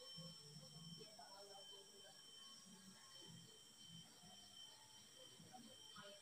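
Near silence with a faint, indistinct voice and two thin, steady high-pitched tones underneath.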